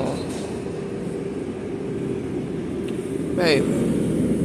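Steady low hum of a supermarket's open refrigerated display case and store ventilation, with a faint held tone. A short vocal sound comes near the end.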